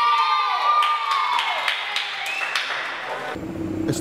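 A group of children hold the last sung note, then break into cheers, shouts and clapping, with one rising whoop. A little before the end the sound cuts off abruptly to a steady low outdoor rumble.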